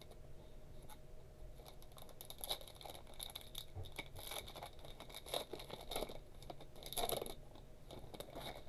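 Trading cards handled by hand: faint scraping and clicking as the card stock slides and taps against other cards, in a series of small, irregular sounds.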